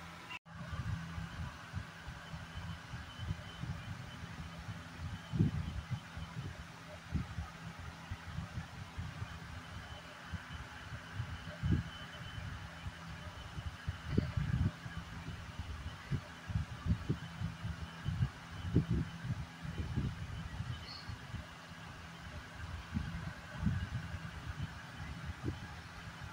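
Irregular low thumps and rumble on the microphone over a steady low hum, with no speech.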